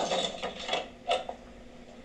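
Wooden closet door creaking open: a few short creaks within the first second or so.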